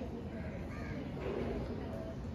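Faint background with distant bird calls, heard in a pause in the talk.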